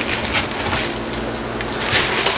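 Reflective foil insulation sheet crinkling and rustling as it is handled and cut, over a steady low hum.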